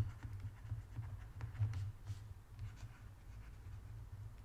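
Stylus scratching and tapping faintly on a tablet screen as words are handwritten, over a steady low hum.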